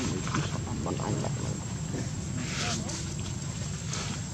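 Outdoor background with a steady low hum, faint voice-like sounds in the first second and a few short animal calls, with a brief noisy burst about two and a half seconds in.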